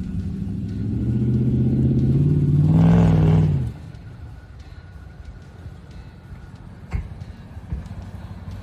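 Ram 1500 pickup's engine revving under load, its pitch climbing for about three and a half seconds before it cuts off suddenly to a low, steady rumble. A single sharp knock comes near the end.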